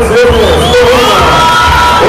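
Arena crowd cheering and shouting, with whoops and one long held call starting about a second in.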